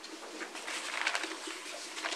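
Meeting-room background in a pause: faint rustling of papers and small scattered handling noises, over a low steady hum.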